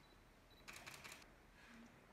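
Near silence: room tone of a hall during a pause in a speech, with a few faint clicks about three-quarters of a second in.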